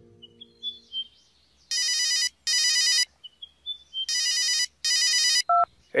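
A telephone ringing in a double-ring pattern: two pairs of rings, the pairs about a second and a half apart, followed by a short beep near the end.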